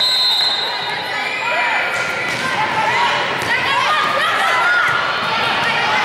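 Volleyball rally in a large gym hall: athletic shoes squeaking repeatedly on the court floor and the ball struck a few times, over players' and spectators' voices. A high steady whistle tone ends in the first second.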